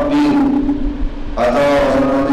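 A man's voice chanting Arabic recitation in long, drawn-out held notes, falling away for a moment near the middle and coming back on a new sustained note.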